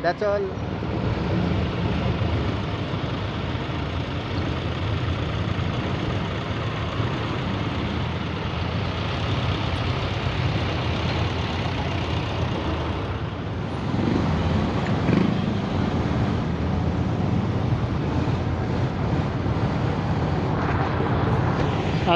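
Steady motorcycle engine, road and wind rumble while riding through slow traffic, with other vehicles running close by.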